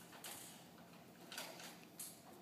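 Near silence: quiet room tone with two faint, brief rustles, one just after the start and one around a second and a half in.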